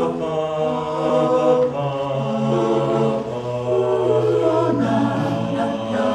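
Mixed-voice a cappella group singing a slow worship hymn in held chords, the chords changing every second or two over a low bass line that steps down in pitch partway through.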